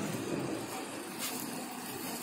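A vehicle running at close range under steady street noise, with one faint click a little past a second in.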